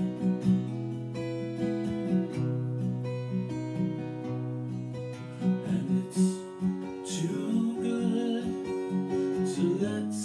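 Acoustic guitar playing a slow accompaniment of sustained bass notes and repeated picked notes. A man's singing voice joins in during the second half.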